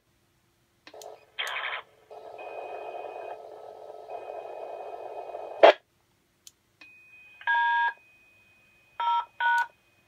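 DTMF touch-tone command beeps sent to an SvxLink radio node: one longer two-tone beep, then two short ones close together near the end. Before them comes a brief burst and a few seconds of radio hiss ending in a click.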